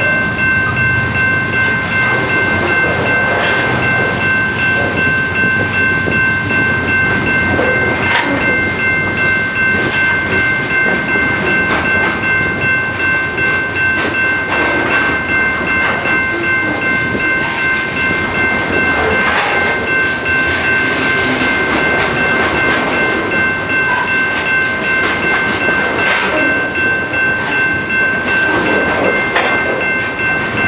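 BNSF freight train's covered hopper cars and gondolas rolling past, a steady rumble with irregular clicks of wheels over the rail joints. A steady high-pitched whine of a few tones is held throughout.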